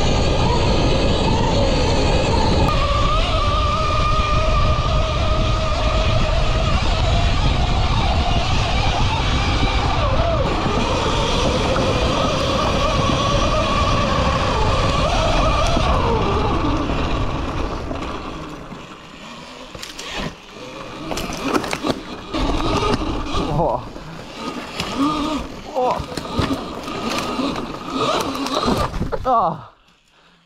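Cake Kalk OR electric motocross bike riding fast on a dirt trail: heavy wind rush over a whine from the electric motor that wavers and then drops away about halfway through. After that it runs slower over rough forest ground, with many knocks and clatters.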